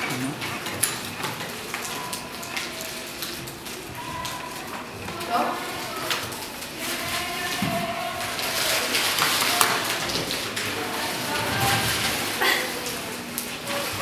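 Classroom hubbub: several students talking at once, not close to the microphone, with scattered clicks, taps and rustles of paper and book pages, busiest about eight to ten seconds in.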